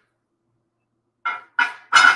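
Three sharp knocks, each with a brief ring, about a third of a second apart, starting a little over a second in after a silent stretch.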